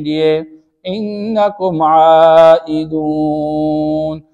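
A man reciting Quranic Arabic in a melodic chant (tilawat): a short phrase, a brief pause, then phrases that settle into long held notes in the second half.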